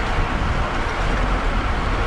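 Steady wind rush and tyre-on-road noise from a road bicycle riding in a race pack at about 21 mph, with wind buffeting the bike-mounted camera's microphone as a deep, constant rumble.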